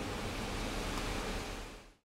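Steady road and engine noise heard from inside a moving car, fading out near the end.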